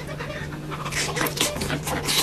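Close-miked eating sounds of a katsudon (breaded pork cutlet and egg over rice) being shovelled in with chopsticks: irregular wet mouth clicks, chewing and breathing.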